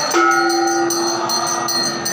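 A temple bell is struck once just after the start and rings out with a long, sustained tone. Under it runs a quick, regular jingling of small metal bells played during the aarti.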